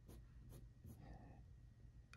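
Graphite pencil sketching on drawing paper, very faint: a few short, light strokes.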